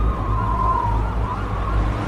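A long wailing tone that wavers and slowly falls in pitch, over a steady low rumble.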